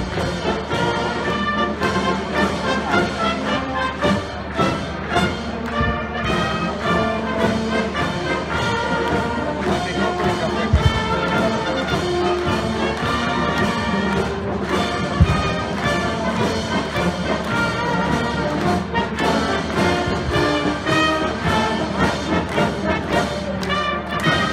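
A parading brass band playing, trumpets and trombones over a steady beat. Two brief low thumps stand out near the middle.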